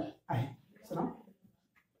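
A person's voice speaking in three short bursts, then trailing off to quiet after about a second and a half.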